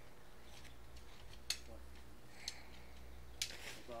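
Tent pole sections clicking together as a dome tent is assembled: three sharp separate clicks about a second apart over a steady low rumble, with a brief voice near the end.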